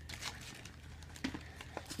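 A few faint taps and light rustles of items being handled and set down, over a low steady room hum.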